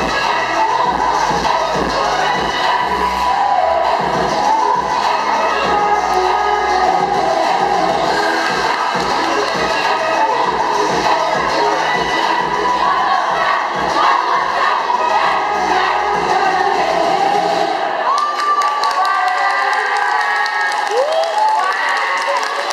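Amplified pop dance music with a heavy beat, with an audience cheering and children shouting over it. Near the end the bass and beat drop out, leaving the cheering and shouting voices.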